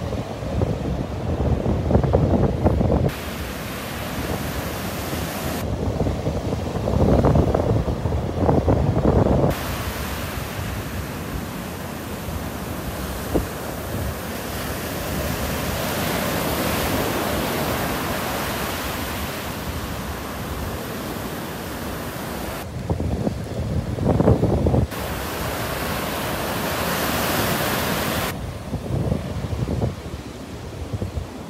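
Gulf surf breaking offshore and washing up the sand in a steady hiss. Wind gusts buffet the microphone in three spells of low rumble: at the start, around six to nine seconds in, and again near the end.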